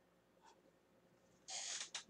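Near silence: room tone for most of the moment, then a short, soft breath intake near the end.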